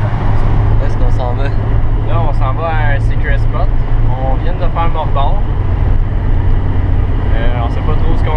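Steady low road and engine rumble inside the cabin of a moving Volkswagen car, with men talking over it for most of the time.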